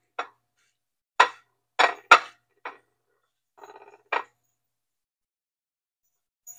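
Hands pressing fish fillets into a breadcrumb coating on a ceramic plate: about six short, sharp clinks against the plate at uneven intervals, with a brief faint rattle shortly before the last one.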